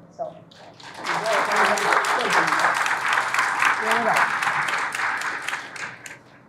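Audience applauding. The clapping starts about a second in and fades out near the end.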